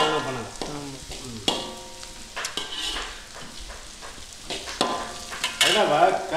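A metal ladle stirs and scrapes diced vegetables in an aluminium wok while they sizzle in the oil, with several sharp knocks of the ladle against the pan.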